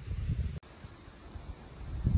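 Low rumble of wind on the microphone, breaking off sharply about half a second in and carrying on fainter.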